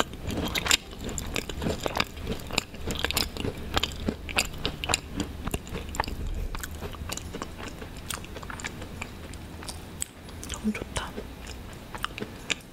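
Close-miked chewing of a macaron with a milk buttercream filling: many short wet mouth clicks, irregularly spaced, over a steady low rumble.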